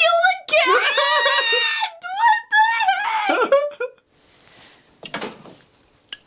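A shrill, high-pitched, wavering scream in several long stretches over the first four seconds, followed by a brief burst of noise about five seconds in.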